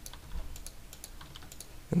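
Several light keystrokes on a computer keyboard as a number is typed into a field.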